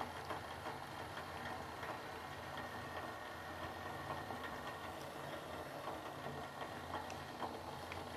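Gas stove burner running under a steel pot of water with peas being blanched: a steady low hum with faint scattered ticks as the water heats back toward the boil.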